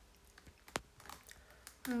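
A few light, scattered clicks and taps, one sharper than the rest about three quarters of a second in, then a woman's voice starts a greeting near the end.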